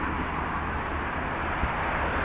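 Steady traffic noise from cars on a city avenue, an even rush of sound with a small knock near the end.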